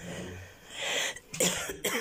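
A woman coughing several times in quick succession, starting a little before halfway through.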